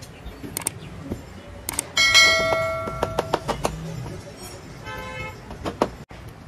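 A few light taps, then a sharp metallic clang about two seconds in that rings on for about a second and a half, and a fainter ringing tone near five seconds.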